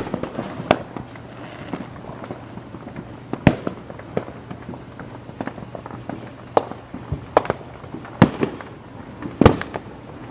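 Fireworks going off: many sharp bangs and pops at irregular intervals, some loud and some fainter. The loudest come about three and a half, eight and nine and a half seconds in.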